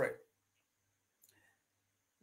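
The last of a man's spoken word, then near silence with one faint click a little over a second in.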